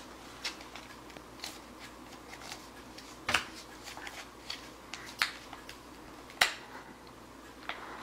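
Paper envelope crackling and crinkling as a toddler's hands pick at it while trying to open it: scattered short, sharp crinkles, the loudest a little past three seconds and about six and a half seconds in.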